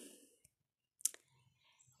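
A single sharp click about a second in, after the tail of a drawn-out "um" fades, with the rest of the moment very quiet.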